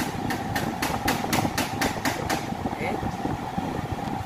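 Film trailer soundtrack played by the Android head unit through the car's speakers: a rhythmic ticking at about four beats a second that stops about two seconds in, with the engine idling underneath.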